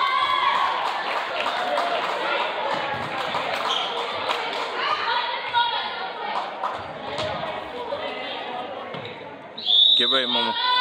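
Volleyballs being hit and bouncing on a hardwood gym floor, short echoing thumps over the steady calling and chatter of players and spectators in a large hall. Near the end a loud voice calls out.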